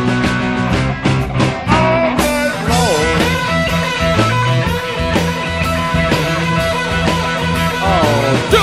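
Live rock band playing an instrumental passage: electric guitar with bent notes over bass guitar and drums.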